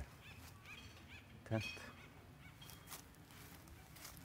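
A bird calling: a run of short, arched notes, about four a second, through the first second and a half, then a few more scattered calls.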